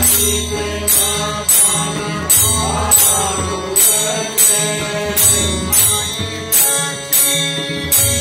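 Devotional bhajan music: a harmonium sustaining chords over tabla drumming, with a bright metallic clash on each beat, about one every 0.6 seconds, typical of small hand cymbals keeping the rhythm.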